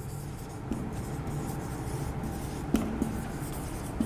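Marker pen writing on a whiteboard: faint rubbing strokes over low room noise.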